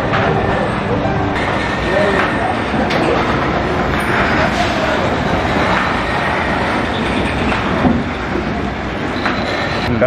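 Motor-driven wooden oil press (chekku) running steadily: the wooden pestle grinding as it turns in the stone mortar. Groundnuts are poured into the mortar partway through.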